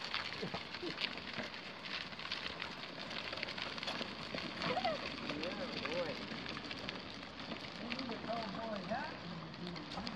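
Small goat-drawn cart rolling along an asphalt driveway: a steady crackling from the wheels on the pavement, dotted with light irregular clicks. Faint voices come and go in the background.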